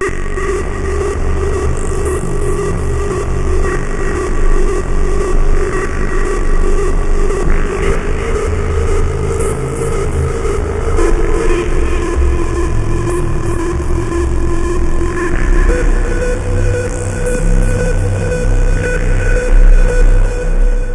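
SEELE Abacus software synthesizer playing its 'Mega Atmosphere' preset, a waveshaping synth. A single sustained pad starts abruptly, noisy and dirty with heavy low rumble, and its held tones shift pitch twice, about halfway through and again a few seconds later.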